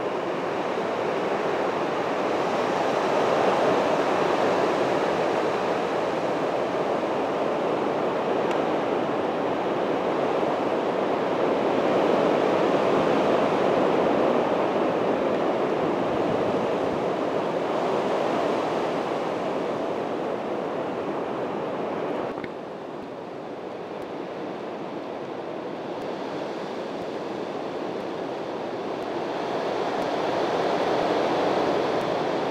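A steady rushing noise that swells and fades over several seconds, then drops suddenly to a lower level about three-quarters of the way through.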